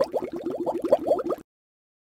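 Editing sound effect for a rank-reveal title card: a rapid run of short rising blips, about ten a second, stopping about one and a half seconds in.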